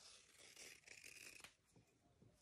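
Near silence, with faint brief rustles of yarn being handled in the first second and a half as the finished crocheted mustache piece is worked off the hook.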